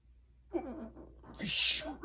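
A man's wordless vocal sound: a hooting, moaning "hoo" about half a second in, then a sharp, breathy exhale near the end.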